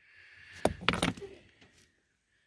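Rock samples clicking and knocking against each other as they are shifted by hand in a bucket: a few sharp clicks, the loudest a little after half a second in, then a couple more around one second.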